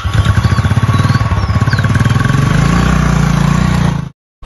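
Royal Enfield single-cylinder motorcycle engine running just after being started, with a steady, even thumping beat; the revs rise slightly near the end.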